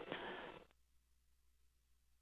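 Near silence on the launch audio feed, after a faint, brief sound that trails off in the first moment.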